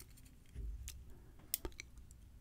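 Faint small metallic clicks and ticks of tweezers working at the pins of a brass lock cylinder, a handful of scattered clicks with the sharpest about a second and a half in.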